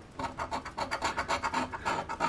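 A coin scraping the scratch-off coating from a lottery ticket in rapid, even back-and-forth strokes.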